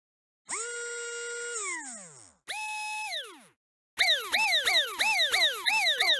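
Synthesized intro sound effects. Two held electronic tones each slide down in pitch and die away, the second higher than the first. Then, about four seconds in, a quick repeating run of rising-and-falling chirps starts, about three a second.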